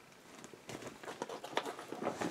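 Faint crinkling and rustling of clear plastic packaging being handled, starting about two-thirds of a second in with a few small ticks.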